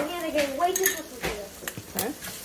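Dishes and metal cutlery clinking several times with sharp, separate clicks.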